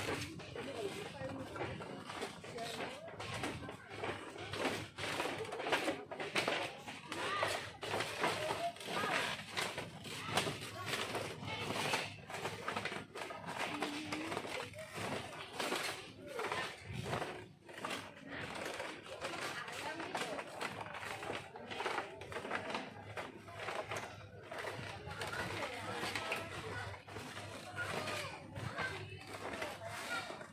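Footsteps on a bamboo-slat boardwalk, the slats creaking underfoot ("kriet-kriet") step after step, with people talking in the background.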